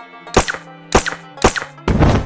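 Four pistol-shot sound effects, about half a second apart, over steady background music.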